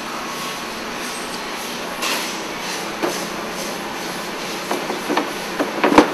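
Steady rushing noise of workshop machinery running, with a few light knocks in the second half.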